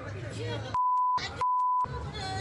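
Two censor bleeps, each a steady high tone about half a second long that replaces all other sound, dubbed over swearing in a heated street argument; raised voices are heard before and between them.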